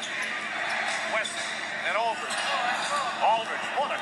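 Basketball shoes squeaking on a hardwood court: a string of short, sharp squeaks from about a second in, the loudest near the middle and again later. Steady arena crowd noise runs underneath.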